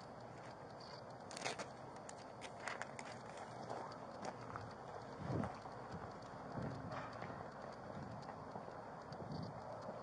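Footsteps on hard ground and gear rustling, picked up by a body-worn camera's microphone over a steady hiss, with a few sharp clicks.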